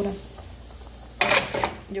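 Stainless-steel pot lid lifted off a pot of boiling soup with a cloth: one short scraping clatter of lid against rim a little over a second in.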